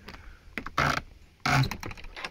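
Cabin door being unlatched and pulled open: two short noisy scrapes followed by a few sharp clicks of the latch and hardware.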